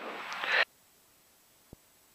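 The tail of a man's voice over the cockpit headset audio, cut off suddenly about half a second in; after that near silence, broken once by a faint click.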